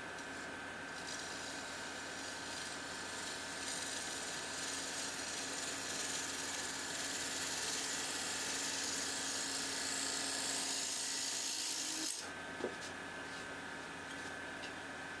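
Wood lathe running with a steady hum while a gouge cuts the spinning wooden bowl base, making a continuous shearing hiss as shavings peel off. The cut stops abruptly near the end, leaving only the lathe's hum, and one short knock follows.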